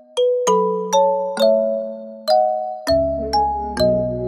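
Background music: a gentle melody of bell-like struck notes, about two a second, each ringing and fading, with deeper bass notes joining near the end.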